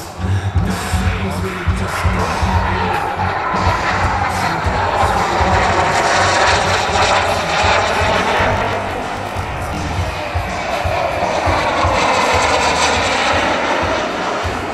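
Turbine-powered RC model jet (an F-104S Starfighter) passing overhead; its turbine sound swells and fades with sweeping changes in tone, loudest about six to eight seconds in and again near the end. Music with a steady beat plays in the background.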